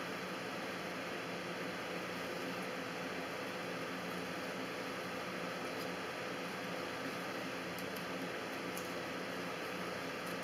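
Steady room hiss with a faint electrical hum. A few faint, short clicks come near the end.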